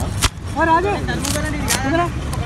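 People talking over a steady low rumble, with one sharp click about a quarter of a second in.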